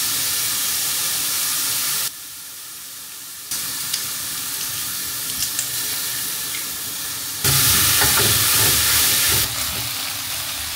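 Chopped tomatoes and onions sizzling in a hot frying pan, a steady hiss. It drops abruptly about two seconds in, comes back, and is louder for a couple of seconds near the end.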